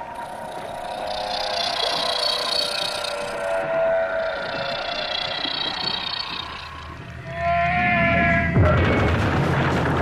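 Eerie, drawn-out whale calls that bend slightly in pitch: the recorded call of the archaeocete whale Basilosaurus, played back into the sea through a large loudspeaker as a lure. About seven seconds in a deep rumble rises, and near the end a loud rushing noise takes over.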